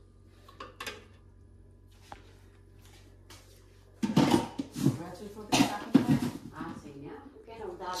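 A metal spoon tapping lightly against an aluminium saucepan a few times, followed about halfway through by louder handling noise mixed with indistinct speech.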